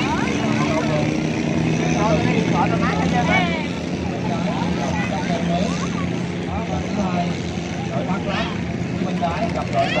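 A boat's outboard motor drones steadily and eases off about seven seconds in, with people's voices talking and calling over it.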